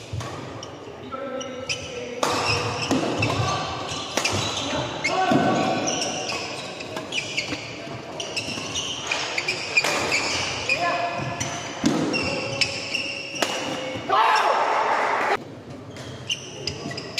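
Badminton doubles rally: sharp racket strikes on the shuttlecock every second or two, with sport shoes squeaking on the wooden court floor and players' voices in a large hall. There is a louder burst near the end.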